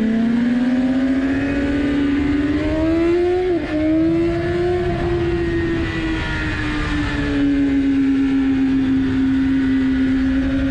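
A 2016 BMW S1000RR's inline-four engine pulling hard on track, its pitch climbing for about three seconds, with a brief cut in pitch and level about three and a half seconds in. It then holds, eases down and runs steady, over constant wind noise.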